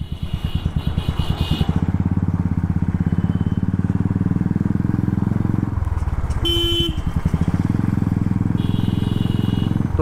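Royal Enfield Classic 350's single-cylinder engine running under way, its exhaust a steady stream of rapid pulses that eases off briefly a little past halfway. A short horn blast sounds about six and a half seconds in.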